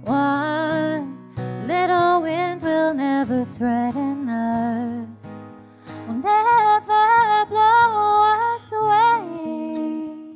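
A woman singing long held notes with vibrato, live into a microphone, over a softly played acoustic guitar; the singing breaks off briefly about halfway through.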